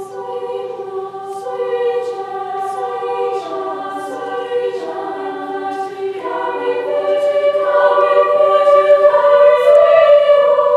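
All-female a cappella choir singing sustained chords in several parts, growing louder through the second half.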